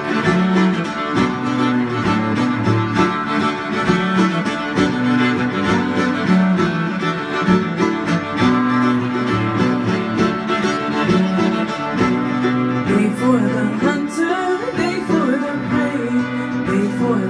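Live acoustic string trio playing an instrumental passage of a folk song: bowed cello lines with viola and five-string banjo, with a wavering melody line over the last few seconds.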